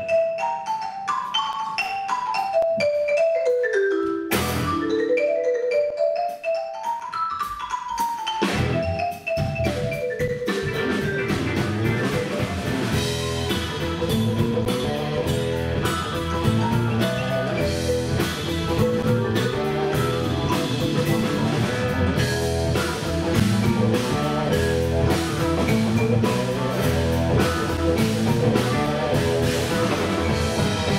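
Marimba played with mallets in quick runs of notes climbing and falling, a few strikes at once, for about the first nine seconds. Then the full live band comes in with drums, bass and keyboards under the marimba, playing at full volume.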